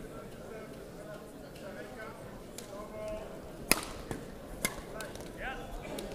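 Badminton rackets striking a shuttlecock during a rally: one sharp, loud hit about halfway through, then two quicker, lighter hits, over the murmur of a busy sports hall.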